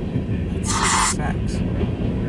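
A freight train of empty covered hopper cars rolling past, with a steady low rumble of wheels on the rails. A short, loud burst of noise comes just past halfway.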